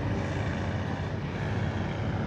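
Steady hum of road traffic, with no distinct events.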